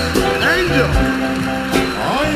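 Live music: a band holding steady chords, with voices gliding up and down over them.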